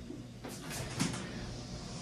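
Faint movement sounds from push-ups on a foam exercise mat: a few soft, short brushes and breaths between about half a second and a second in, over quiet room tone.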